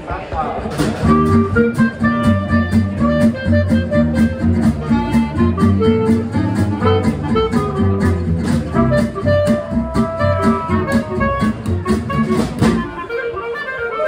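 Small jazz band playing: strummed acoustic guitar and upright bass keep a steady pulse with drums, while clarinet and trumpet carry the melody. The full band comes in about a second in and thins out to a quieter passage near the end.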